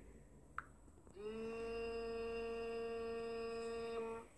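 A voice holding one steady hummed note for about three seconds, starting a little over a second in, after a faint click.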